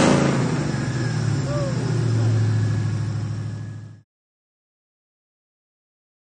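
Roush-supercharged Ford 5.0 V8 falling back from a quick rev, then settling into a steady idle. The sound cuts off suddenly about four seconds in.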